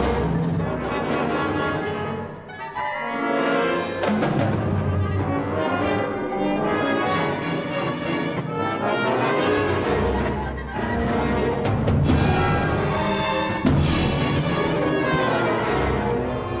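Symphony orchestra playing a loud, dense passage of contemporary classical music. It dips briefly about two and a half seconds in, with a sharp accent a little before the end.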